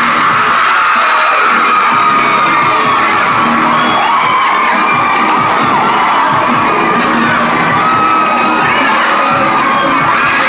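Large audience cheering and shouting loudly and without a break, many high-pitched voices overlapping.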